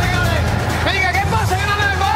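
A man shouting in a raised voice over background music with a steady low bass.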